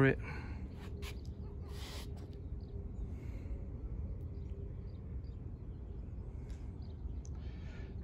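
Quiet outdoor background: a steady low rumble with a few faint clicks and a short faint hiss about two seconds in.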